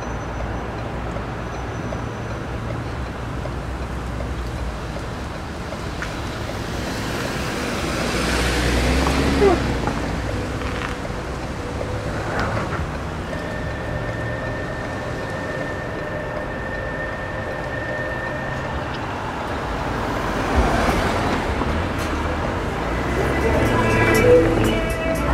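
Street traffic noise with a steady low rumble, swelling as a vehicle passes about eight to ten seconds in and again about twenty-one seconds in.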